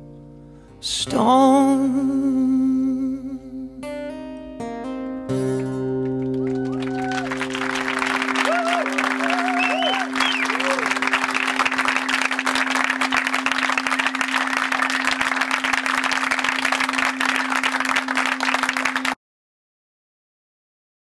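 A man's final sung note with vibrato over strummed acoustic guitar, ending on a held chord that rings on. From about seven seconds in, audience applause with a few cheers rises over the ringing chord, and everything cuts off abruptly near the end.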